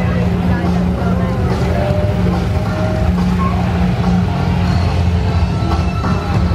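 Several Can-Am Spyder three-wheeled motorcycles running as they ride past in a line, a steady low engine drone, with voices from the watching crowd over it.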